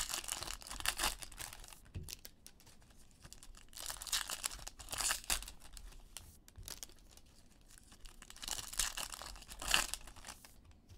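Foil Bowman Chrome trading-card pack wrappers being torn open and crinkled by hand, in three bursts of rustling tearing: at the start, midway and near the end.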